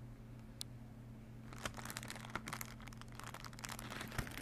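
Clear plastic product packaging crinkling as it is handled right next to the microphone: a quick, irregular run of crackles starting about a second and a half in, over a steady low electrical hum.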